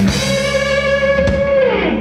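Rock band's closing chord: a hit together, then an electric guitar note held over ringing bass and cymbals, the guitar note bending down in pitch near the end as the song finishes.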